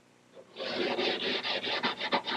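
Quick back-and-forth rubbing strokes on the pine cabinet's wooden surface, several a second, starting about half a second in.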